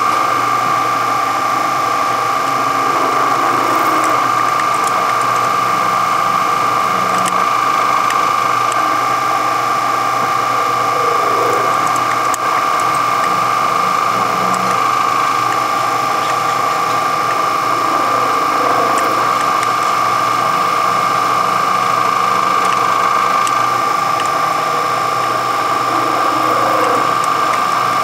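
Benchtop milling machine running steadily, its small end mill cutting a slot for a locating pin in an aluminum bearing block: a constant whine over an even hiss.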